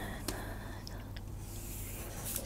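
Felt-tip marker drawn along a wooden ruler across paper, a faint scratching with a few small ticks, over a steady low electrical hum.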